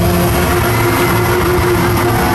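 Loud live rock band music in an arena, with a held, sustained chord ringing through and a heavy low-end rumble underneath.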